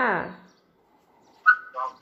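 Speech ending on a drawn-out final syllable, then after a short lull two brief pitched calls about half a second apart.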